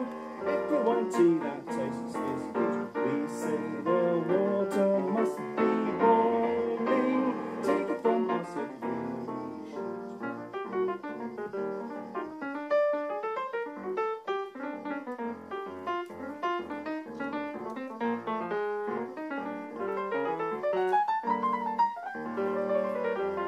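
Yamaha grand piano played solo, jazz: full, ringing chords with bass notes for about the first ten seconds, then lighter, quicker runs of separate notes in the upper register.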